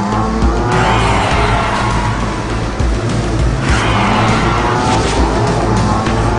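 A car engine revving hard twice, about a second in and again near four seconds, with tyres squealing, over background music with a heavy bass beat.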